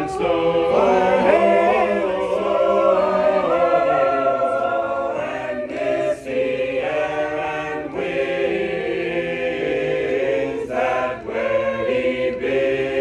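A choir of mixed voices singing a hymn unaccompanied, several parts in harmony at once, with no instruments.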